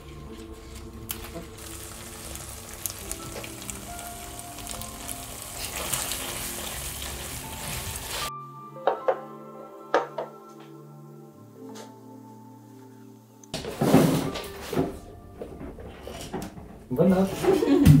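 Background music over the steady sizzle of a pan frying on the stove. The sizzle cuts off suddenly about eight seconds in, and the music carries on with a few light knocks as plates are set down on a table.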